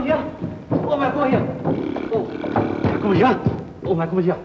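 A man's voice, loud and swooping up and down in pitch in broken bursts, with no clear words.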